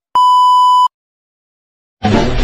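Television test-pattern tone: a single steady electronic beep, just under a second long, that cuts off abruptly.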